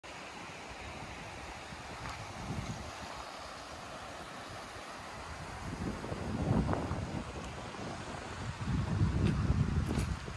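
Wind buffeting an outdoor microphone over a steady hiss, with stronger gusts about six seconds in and again near the end.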